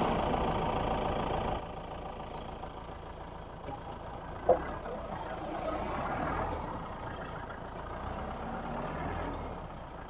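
Mahindra jeep engine idling while the vehicle stands still, going somewhat quieter about a second and a half in. A single brief sharp sound about halfway through is the loudest moment.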